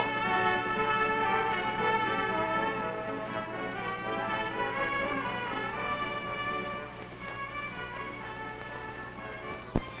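Orchestral background music, held notes that fade gradually over the second half.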